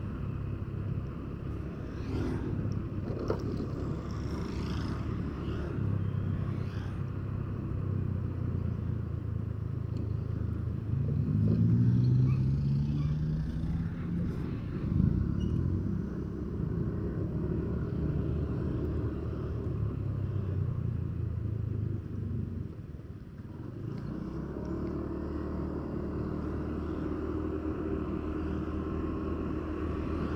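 A motor vehicle's engine running steadily with road noise while driving in traffic. About a third of the way in the engine note rises as it speeds up, which is the loudest part. A little past two-thirds it briefly eases off before settling back to a steady run.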